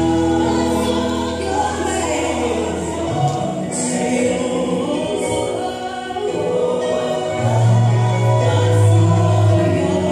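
Gospel music with a choir singing over sustained bass notes, loudest in the last few seconds.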